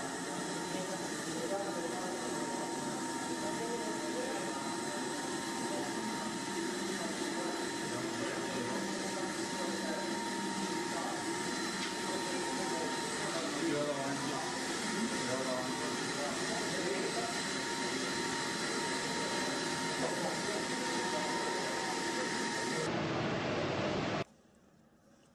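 Indistinct chatter of many voices in a large, echoing hall, with no one voice standing out. A faint steady high tone runs underneath.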